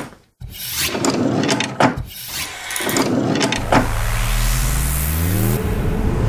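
Sound effects for an animated logo intro. There are several quick whooshes. From a bit past halfway a rising sweep builds for about two seconds, then gives way to a hissing wash as the logo settles.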